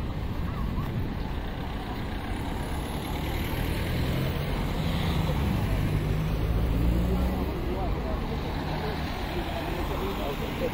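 Street traffic: a motor vehicle's engine hums past close by, swelling to its loudest past the middle and then fading, over a steady low rumble of other traffic, with passers-by talking.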